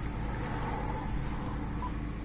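Steady low rumble of a car, with no distinct events.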